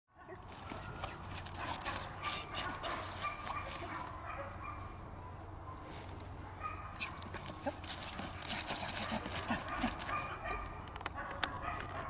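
Young German Shepherd puppy whining in high, held tones, broken by short sharp yips.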